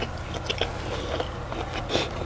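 Close-miked chewing of a mouthful of sausage with the mouth closed: irregular small wet clicks and smacks, several a second, with a sharper click near the end.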